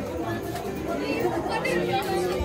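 Several people talking over one another in the background, with no words clear.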